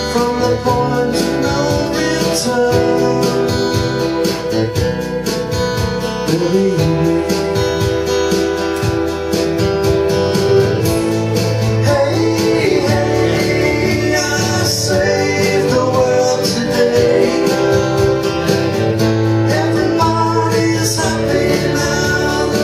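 Acoustic guitar strummed in a steady rhythm, playing a song's chords.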